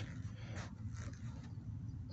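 Quiet room tone in an empty office: a steady low hum with a couple of faint soft sounds.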